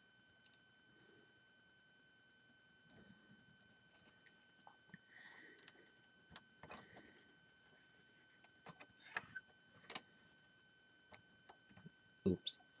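Near silence with scattered faint clicks and taps of plastic Lego pieces being handled and fitted onto a model, a couple of sharper clicks near the end, over a faint steady high-pitched whine.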